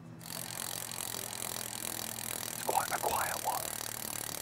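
Freehub of a Shimano Dura-Ace C40 rear wheel buzzing steadily as the wheel coasts, its ratchet clicking in a dense, even whirr.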